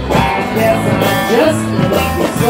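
Live band playing an instrumental break: an electric guitar lead with bent, sliding notes over bass and drums.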